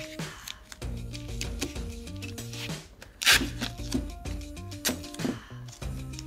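Background music with a simple stepped melody, over which masking tape is pulled and torn from the roll to fix a wooden dowel to cardboard: short rasping rips, the loudest about three seconds in and another near five seconds.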